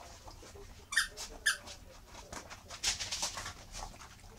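Miniature schnauzer puppies play-fighting: two short, sharp, high yips about a second in, then a flurry of quick scuffling sounds near the end.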